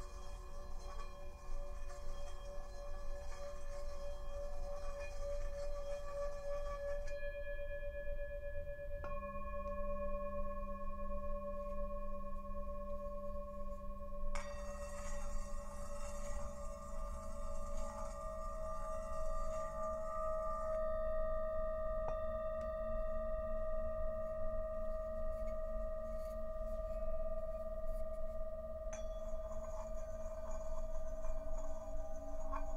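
Himalayan singing bowls played with mallets, several bowls ringing together in long sustained tones, the main tone slowly pulsing. A deeper bowl joins after a light strike about nine seconds in, and further bowl tones are layered in later.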